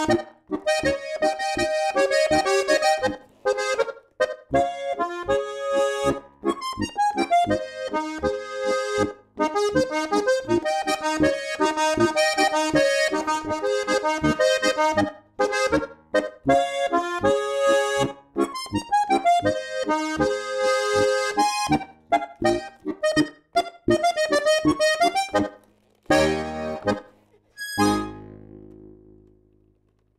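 Steirische Harmonika (Styrian diatonic button accordion, tuned B-Es-As-Des) playing a brisk polka, a treble melody over a steady bass-and-chord beat from the left-hand buttons. Near the end the tune stops on a short chord, then a last chord that dies away.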